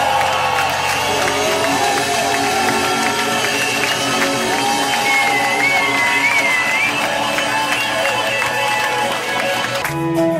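Concert crowd cheering, whooping and applauding at the end of a song, with instruments still sounding a steady tone underneath. A long wavering call rises out of the crowd about five seconds in.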